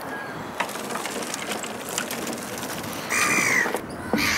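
A bird call, one loud arched cry lasting under a second, about three seconds in, over steady outdoor background noise with a few faint knocks.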